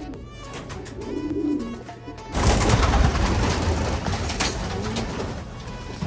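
Racing pigeons cooing in a loft, with a low wavering coo about a second and a half in. A little after two seconds in, the sound cuts abruptly to a louder, steady noise.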